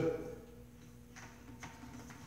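Faint clicks and knocks of an unplugged circular saw being handled and repositioned on a plywood sheet, over a steady low electrical hum.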